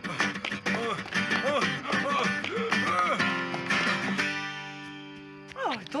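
Film soundtrack music with guitar, ending about four seconds in on a long held chord that fades slightly; a short spoken "oh" comes right at the end.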